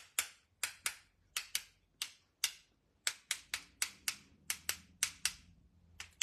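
Gold metallic paint marker being worked to splatter paint: a run of sharp, dry clicks, about three a second in an uneven rhythm.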